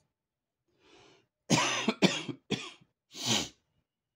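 A man coughing four times in quick succession, starting about a second and a half in, with the last cough the longest.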